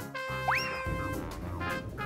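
Background music with a cartoon sound effect: a quick upward whistle-like glide about half a second in.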